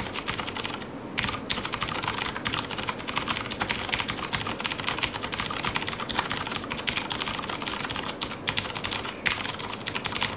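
Fast, continuous typing on a Das Keyboard Model S Professional mechanical keyboard, a dense stream of key clicks with a brief pause about a second in.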